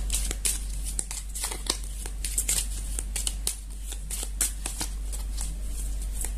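A deck of tarot cards being shuffled by hand, with quick, irregular clicks and flicks of cards against each other.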